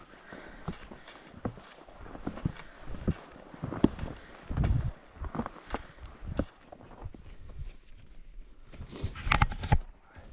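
Skis and poles crunching and knocking on packed snow in a steady run of strides, then a louder scuffle of impacts near the end as the skier tumbles into the snow.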